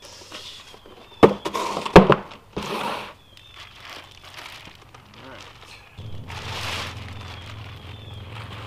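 Plastic wrapping crinkling and rustling as long wrapped parts are lifted out of a cardboard box and handled, with two sharp knocks about one and two seconds in, the second the loudest.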